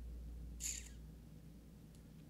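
A low, steady electrical hum, with one short breath hissing into the microphone a little after half a second in.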